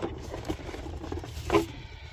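Light rustling and small knocks of packaging being handled: a hand moving cables in a plastic bag and lifting a handheld diagnostic tablet out of its box tray. One slightly louder rustle or knock comes about one and a half seconds in.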